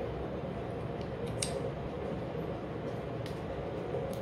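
A few small, light clicks of a metal bobbin case and bobbin being handled, the clearest about a second and a half in, over a steady background hiss.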